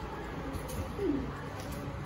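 A short, low, falling bird call about a second in, over steady room noise.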